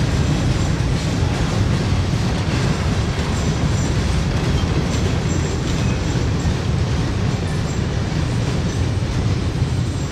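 Freight train boxcars rolling past at close range: a steady, loud rumble and clatter of steel wheels on the rails.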